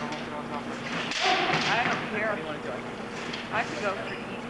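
Voices shouting over a steady murmur of chatter: one long, loud shout about a second in and a short one near the end.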